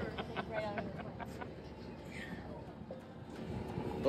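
Faint voices of people talking in the background over low outdoor background noise.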